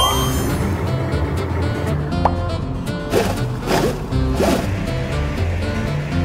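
Cartoon background music plays throughout. A rising whistle-like sound effect comes at the very start, then a short tone about two seconds in, and three short falling squeaky sound effects in the middle.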